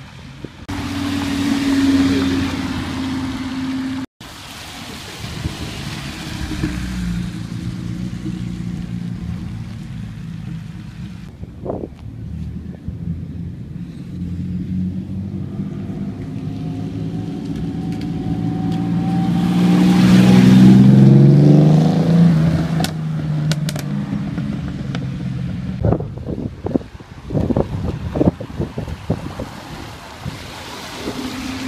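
A Ferrari FF's V12 engine pulls away toward a tunnel for the first few seconds. After a sudden cut, another car's engine runs steadily and then rises to a loud pass about twenty seconds in. A few sharp knocks come near the end.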